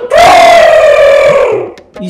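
A person's voice holding one long, loud call on a single note, slowly falling in pitch for about a second and a half before fading.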